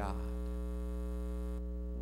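Steady electrical mains hum with a buzzy ladder of overtones, under the fading end of a spoken word. A faint hiss cuts out near the end.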